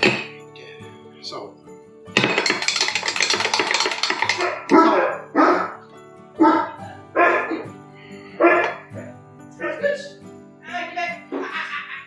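Metal spoon stirring yeast and water in a small glass jar, a dense rattling clatter for about two seconds, over steady background music. After it comes a string of short voice-like sounds, about one a second.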